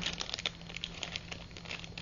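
Clear plastic zip-top bag crinkling as it is handled and turned over, a dense run of small crackles.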